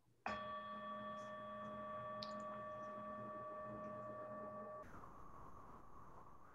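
A meditation bell struck once, ringing with a clear steady tone for about four and a half seconds before it cuts off suddenly.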